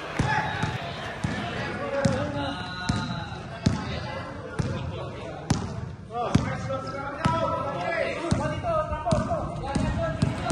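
A basketball being dribbled on a hard gym floor, bouncing a little more than once a second, each bounce echoing in the large hall. Players' voices call out over the bounces.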